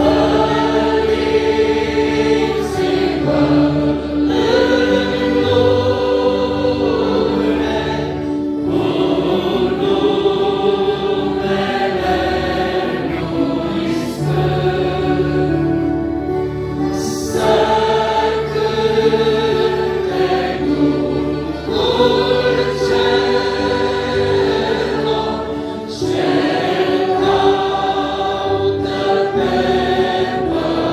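Congregation singing a hymn together, the many voices holding long notes in phrases with short breaks between lines.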